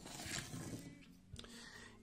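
Faint rustling swish as a 3D-printed PLA test piece is moved across a cutting mat, followed by a single light click about one and a half seconds in.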